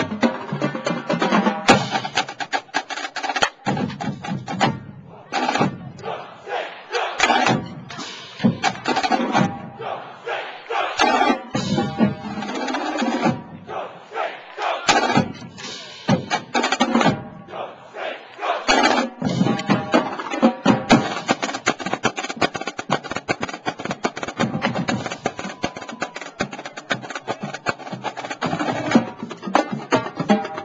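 College marching band drumline playing a street cadence: rapid snare drum strokes over tenor and bass drums. The rhythm breaks into phrases with short pauses in the first half, then runs dense and unbroken from about two-thirds of the way in.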